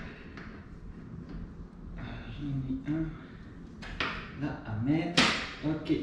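Small metallic clicks and knocks of coupling parts being fitted at a bicycle's rear wheel, the loudest a sharp click about five seconds in, with a man's low muttering voice in between.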